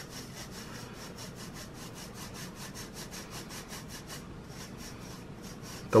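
A hand rubbing ground almond powder through a fine-mesh metal sieve in quick, even strokes, breaking the clumps into smaller pieces.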